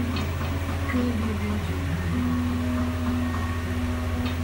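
Background music playing over a steady low hum, with faint soft ticks of hands working on hair and scalp.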